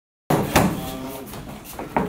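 Kicks thudding against a padded body protector, two sharp hits close together, followed by a short vocal sound and a lighter knock near the end.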